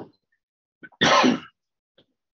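A person clearing their throat once, a short rough burst about a second in.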